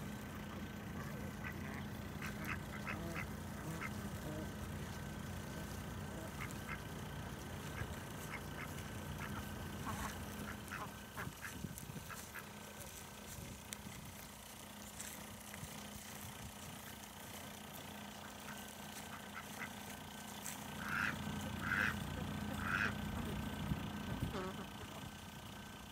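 Ducks (mallards and domestic ducks) quacking in short, scattered calls, with three louder quacks close together near the end, over a steady low hum.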